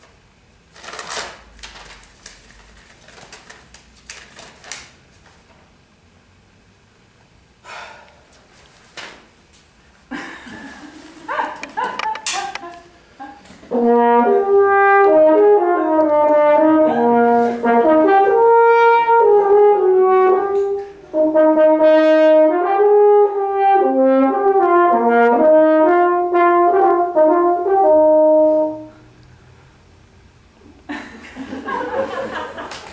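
Scattered clicks and rustling, then a French horn playing a slow, loud solo melody of held notes that step up and down for about fifteen seconds before stopping near the end.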